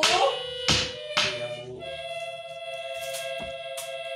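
A short spoken phrase, two sharp knocks about a second in, then from about two seconds in a steady held chord of background music.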